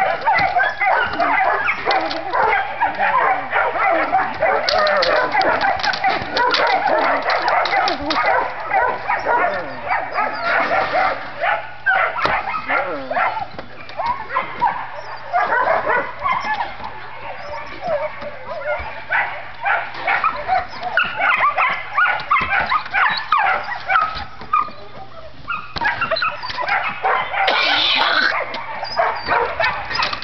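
Dogs barking and yipping almost without a break, many short barks overlapping.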